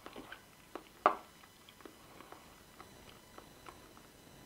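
Close-up mouth sounds of chewing: a scatter of small soft clicks, with one sharper, louder click about a second in.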